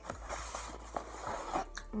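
Close-up chewing of a mouthful of waffle fries, with soft irregular crackles, and a brief paper rustle from the fry bag in the first second.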